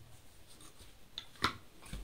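Light handling of a plastic electrical switch box and its wires, small rubbing and ticking sounds with one sharp click about one and a half seconds in.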